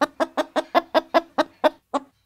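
Hen clucking: a rapid, even run of short clucks, about five a second.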